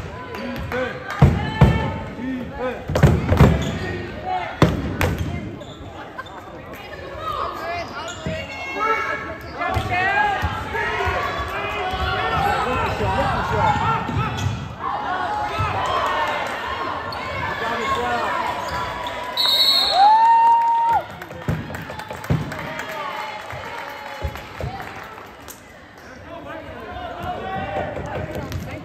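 A basketball bouncing on a hardwood gym floor, with players and spectators shouting and talking in a large, echoing gym. About two-thirds of the way in, a short high whistle blast is followed by a steady tone about a second long.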